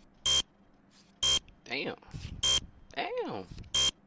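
A meme soundtrack: four short, loud electronic buzzer beeps about a second apart, alternating with a man's voice drawing out two long exclamations that rise and fall in pitch.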